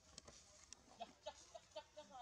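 Faint clucking of a domestic chicken: a run of short, even clucks at about four a second in the second half, with a few light clicks earlier.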